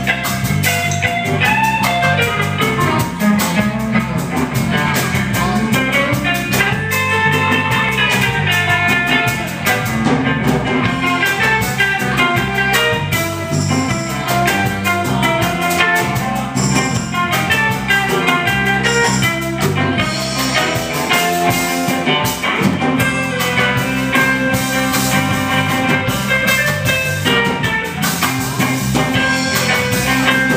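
Live blues trio playing an instrumental: a guitar lead of quick note runs and bent notes over bass guitar and drum kit.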